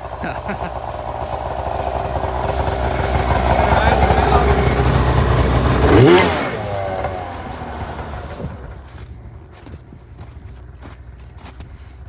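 A snowmobile engine approaching and growing louder, passing close about six seconds in with a sweep in pitch, then fading away.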